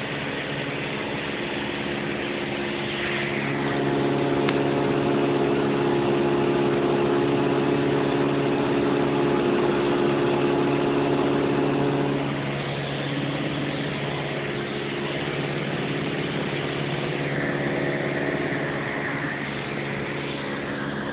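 Cessna 172's piston engine and propeller droning steadily, heard from inside the cabin in flight. It grows louder from about four seconds in and eases back at about twelve seconds.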